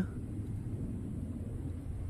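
Low, steady rumbling background noise, with no scratching or other distinct event.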